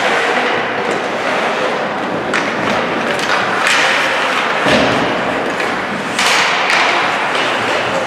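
Ice hockey play on a rink: several thuds of puck and bodies against the boards, with skates scraping and sticks hitting the ice, and one heavier deep thud about halfway through.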